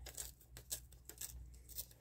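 Glossy magazine paper being torn by hand along an edge, a series of faint small rips and crackles.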